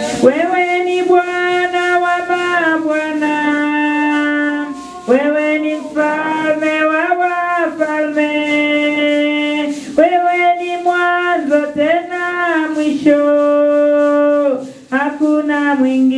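A woman sings a slow worship song into a handheld microphone, holding long steady notes in phrases of about five seconds.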